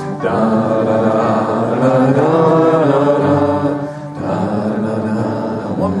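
A roomful of voices singing a wordless 'da da da' chorus together with the singer, over his strummed acoustic guitar.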